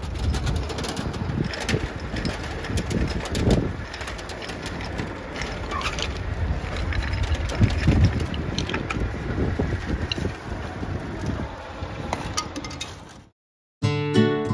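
Outdoor rumble with wind on the microphone and scattered clicks and rattles as phosphine fumigant tablets are poured from a canister into aluminium foil trays. The sound cuts off suddenly about a second before the end.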